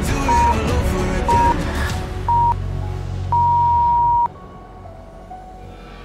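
Workout interval timer counting down: three short beeps a second apart, then one long beep of about a second at the same pitch, marking the end of the exercise interval. Background pop music plays under the beeps and drops much quieter after the long beep.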